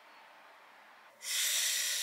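Near silence, then about a second in a loud breathy exhale close to the microphone, a steady hiss lasting just over a second.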